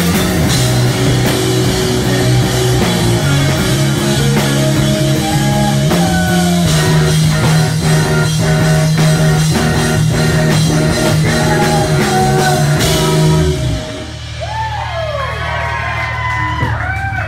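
Live rock band playing loud, with electric guitar, bass guitar, drum kit and a singer. The song stops about fourteen seconds in, leaving a low held note under audience cheering and whistles.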